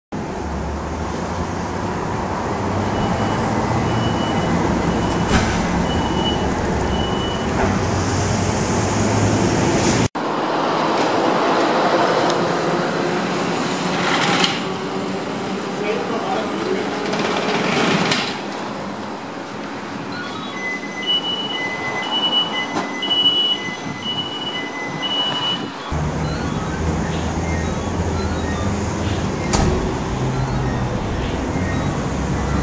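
Fire engine crew turning out: voices and movement in the appliance hall, repeated two-tone electronic beeps that come and go in short runs, and a steady low rumble in the parts filmed outside.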